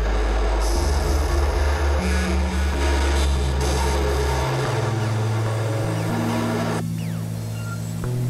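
Experimental electronic synthesizer drone music: deep sustained bass tones that step to new pitches every few seconds, under a dense noisy hiss that cuts out about seven seconds in.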